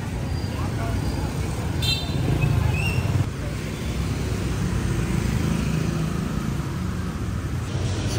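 Motor scooter and car traffic passing on a wet city street: a steady low engine rumble, with a brief high-pitched sound about two seconds in.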